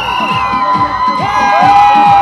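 A crowd cheering and shouting over music with a drum beat about three times a second and long held high tones.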